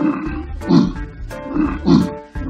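Rhinoceros calls, a sound effect heard as about three loud, low calls over background music.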